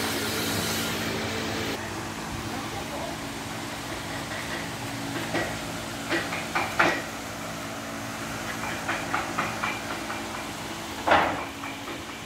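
Woodworking workshop noise: a steady machine hum with a hiss that drops away about two seconds in, then scattered sharp knocks and taps, several in quick succession in the second half and the loudest one near the end.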